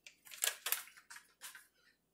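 A few short, faint crackling handling noises in a kitchen, about five in two seconds, like packaging or utensils being handled.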